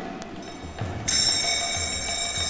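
A metal bell is struck once about a second in and rings on, sounding several high steady tones together, over a few soft low drum beats. A sung line of the chant ends just at the start.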